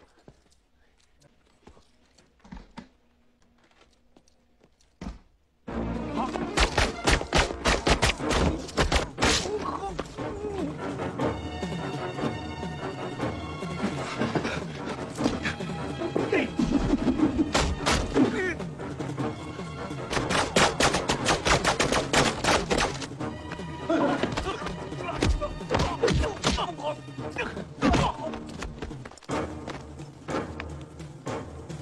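Film fight soundtrack: after a few faint knocks in near quiet, an action music score starts suddenly about six seconds in under a rapid run of punches, thuds and knocks.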